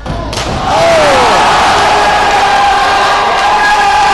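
A body slapping flat onto pool water in a belly flop about a third of a second in, followed by loud, sustained crowd cheering and yelling.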